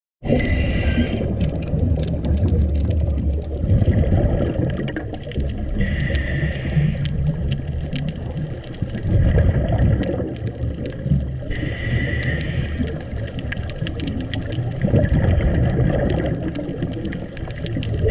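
A scuba diver breathing through a regulator, heard underwater through the camera housing. About every six seconds there is a brief hiss with a whistling tone as the diver inhales. Between the inhales runs a low rumbling gurgle of exhaled bubbles.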